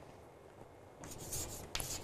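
Chalk writing on a green chalkboard: after a second of room tone, a few short chalk strokes.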